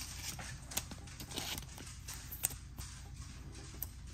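Panini Select WWE trading cards being handled and set down on a playmat: scattered light taps and slides of card stock, over a low steady hum.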